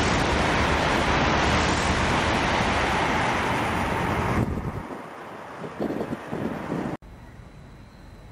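N700 series Shinkansen passing through the station at high speed without stopping: a loud, steady rush of air and running noise that stops abruptly about four and a half seconds in as the train clears. Gusts of wake wind on the microphone follow before the sound cuts to a much quieter background.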